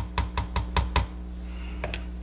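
A spoon knocking against the sides of a plastic measuring jug while thick lotion is stirred by hand: a quick run of about five knocks a second that stops about a second in.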